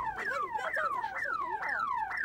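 Car alarm of a silver Mazda MX-5 convertible sounding in repeated falling wails, about three a second, set off by the car being kicked.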